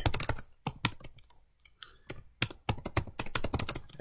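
Typing on a computer keyboard: a run of quick, irregular keystrokes, a short pause a little after one second in, then more keystrokes.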